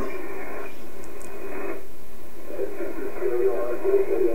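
Shortwave receiver audio in upper-sideband mode on an HF aeronautical channel: steady static hiss from San Francisco oceanic air traffic radio, with a voice coming faintly through the noise near the end.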